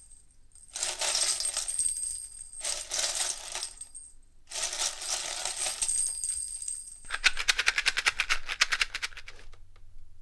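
Bright metallic jingling that comes in three bursts, like coins being shaken or poured. Near the end it turns into a fast, even rattle of clicks lasting about two seconds.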